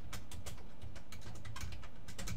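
Typing on a computer keyboard: a quick, irregular run of keystroke clicks over a steady low hum.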